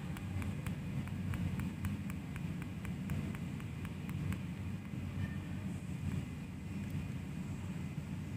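Faint steady low background hum with a run of faint, evenly spaced ticks, about three or four a second, mostly in the first half.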